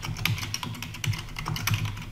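Computer keyboard being typed on: a quick, irregular run of keystroke clicks, several a second.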